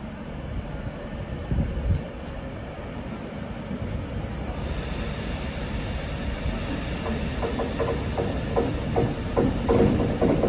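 Class 390 Pendolino electric train pulling into the platform, its running noise growing louder as it approaches. Short squealing tones from the wheels come in over the last few seconds.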